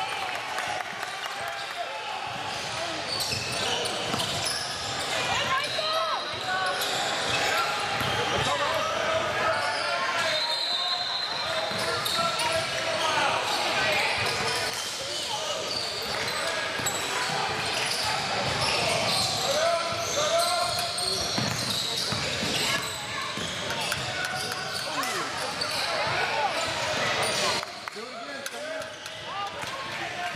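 Basketball being dribbled on a hardwood gym floor during a game, mixed with the shouts and chatter of players and spectators in a large hall. It gets quieter for the last couple of seconds.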